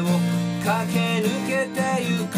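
Takamine TD30 steel-string acoustic guitar strummed steadily, with a held melody line that slides in pitch sounding over it.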